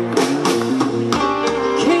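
Live blues band playing between sung lines, with guitar to the fore.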